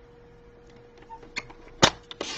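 Light ticks of cardstock being squared up on a sliding paper trimmer, then one sharp click near the end as the trimmer's blade carriage is pressed down to start the cut.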